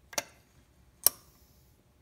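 Two sharp clicks about a second apart, the second louder, from the throttle linkage on a Toyota 22RE throttle body as the throttle is worked by hand and let go against the dashpot.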